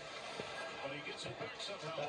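Faint speech from a televised hockey broadcast playing on a TV in the room, likely the game commentary.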